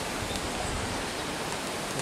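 Steady, even rushing noise of the outdoor background, with no distinct event standing out.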